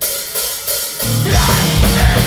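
Hardcore punk band starting a song live: drums and cymbals crash in at once, and about a second in the bass and guitars join at full volume.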